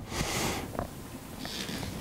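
A person breathing audibly through the nose, a short sniff-like breath at the start, then a softer intake of breath near the end, over quiet room tone.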